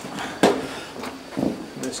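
Knocks and scuffs as a man climbs aboard a small electric go-kart, its motors not running: one sharp knock about half a second in and a lighter one about a second and a half in.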